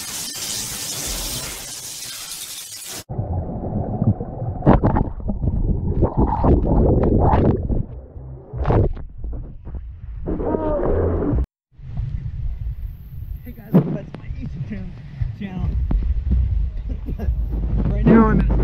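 A noisy hissing sound effect under the title card for about three seconds, cut off sharply. Then pool water splashing and muffled voices, dull and cut off at the top as the camera dips into the water.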